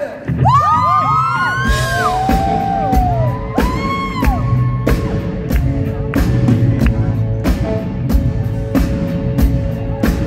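Live rock band starting a song: electric guitar and bass with a held note and a steady beat of sharp hits about once a second. Audience members whoop and scream over the first few seconds.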